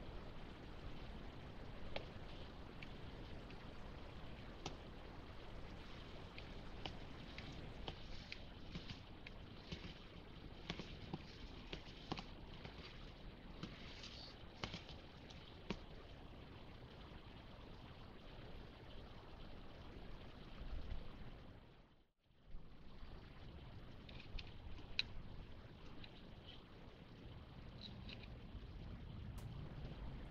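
Faint steady background noise with scattered light clicks from a pistol-grip grease gun being pumped, forcing grease into a trailer axle hub through the grease fitting on the spindle end. The sound cuts out for a moment about two-thirds of the way through.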